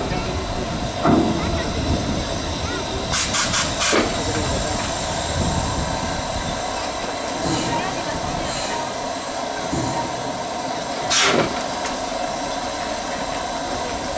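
Steam locomotive on a turntable with steam hissing steadily. A quick cluster of about four sharp knocks comes three to four seconds in, and another knock a few seconds before the end.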